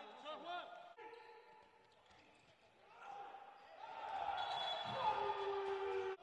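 Indoor handball play in a large hall. There are short squeaks like shoes on the court floor and the ball bouncing in the first second, then louder shouting voices in the second half.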